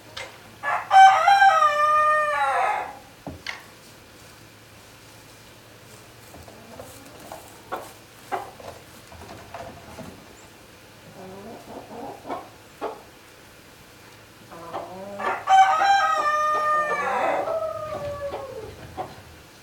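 A rooster crowing twice, one long cock-a-doodle-doo about a second in and another near the end, each falling in pitch at its close. Between the crows, chickens cluck quietly over a steady low hum.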